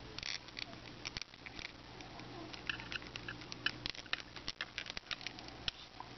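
Faint, scattered small plastic clicks and taps from a NECA David 8 action figure being handled as a head is pressed onto its neck peg.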